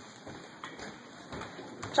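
Handling noise of a handheld camera being swung around: low rustling with a few light knocks.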